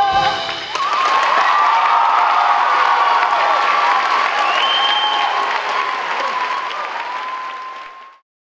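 An audience applauds with cheers, starting just under a second in after the song's last note stops. The applause slowly fades and then cuts off suddenly at the end.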